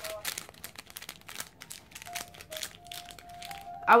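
Light crinkling and quick irregular clicks as a thin metal chain and its small plastic bag are handled in the fingers.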